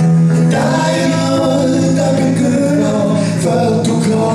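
Live folk-rock song: male vocals, with a new sung line starting about half a second in, over strummed acoustic guitar and electric bass guitar.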